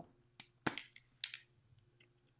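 A few faint, short clicks and taps from handling a mist spray bottle and a plastic stencil; the second, about two-thirds of a second in, is the loudest.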